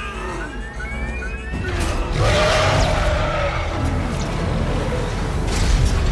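Action-film soundtrack mix: music over a heavy, continuous low rumble of giant-robot battle effects. It grows louder over the first two seconds, and a long wavering pitched cry rises and falls from about two seconds in.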